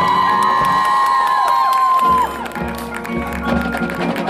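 Marching band brass sliding up into a loud, held high chord that cuts off a little over two seconds in, leaving quieter drums and percussion.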